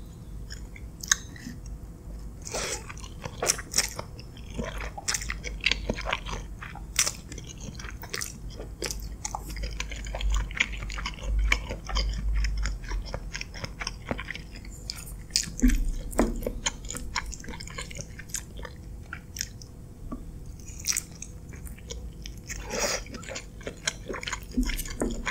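Close-miked chewing of creamy spaghetti, with many short, sharp wet mouth clicks and smacks throughout.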